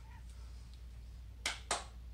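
Two sharp clicks a quarter second apart about one and a half seconds in, made as a man rises out of a bodyweight squat and lifts his arms, over a low steady room hum.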